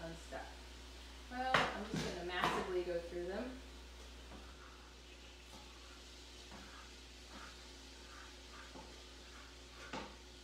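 A short voice sound, about two seconds long, starts about a second and a half in. The rest is quiet kitchen room tone with a steady low hum and a few faint clicks.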